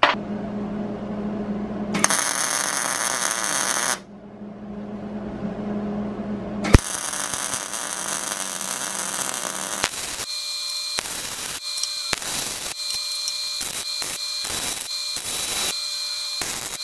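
MIG welder arc crackling as a steel pipe is welded to square steel tubing. It comes in several runs with pauses, ending in a string of short stop-start bursts like tack welds.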